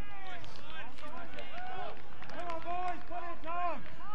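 Voices shouting outdoors: a string of loud shouted calls, several in a row and some drawn out.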